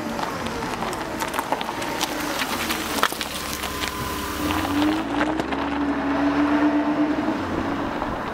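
A motor vehicle's engine running, its pitch rising about halfway through, over a rushing noise with scattered clicks.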